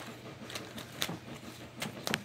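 Faint rustle of a plastic zip bag with a few light clicks as a wooden gavel and bagged game pieces are handled.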